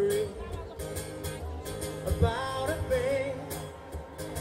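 Acoustic guitar strummed in a steady rhythm, with a man singing over it through a PA: one sung phrase ends just after the start and another comes about halfway through.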